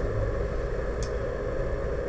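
Steady low background hum and rumble, with one brief faint tick about a second in.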